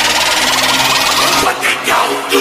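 Electronic intro music with a dense, noisy swooshing sound effect, breaking into short stabs in the second half.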